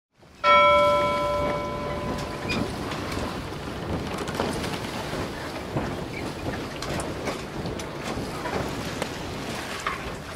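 A single chime-like tone struck about half a second in, ringing out and fading over a second or two, over a steady noisy rumble with scattered crackles like a rain-and-thunder ambience.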